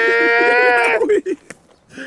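A long, held, high-pitched bleat-like cry with a man talking underneath it. It stops about a second in.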